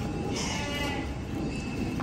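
Cattle mooing: one short call about half a second in, over the steady background noise of the cattle yard.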